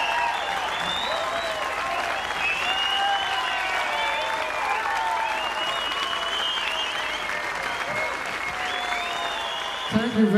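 A large audience applauding steadily, with cheering voices calling out over the clapping.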